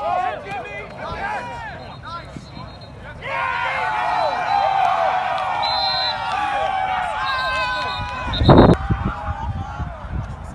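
Sideline spectators and players shouting and cheering over a flag football touchdown run, a few voices at first, then many voices yelling at once from about three seconds in. A loud thump on the microphone comes near the end.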